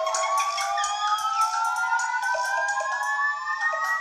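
Cartoon soundtrack sound effect: a slow, steady upward glide in pitch, several tones rising together like a siren, over light music with quick high ticks.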